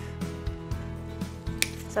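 Soft background music runs throughout. About one and a half seconds in, a single sharp snip is heard: hand cutters clipping through the wire-cored stem of a silk ruscus sprig, close to a leaf.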